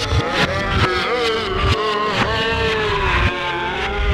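Vinyl records played through a DJ mixer in a turntable routine: a sustained pitched sound slowly bending down in pitch over a beat of drum hits.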